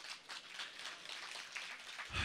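Faint, scattered applause from a concert audience, a dense patter of light claps.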